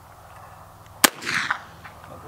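Single shot from a Marlin 1893 lever-action rifle in .32-40, a sharp crack about a second in, followed by a short rolling tail.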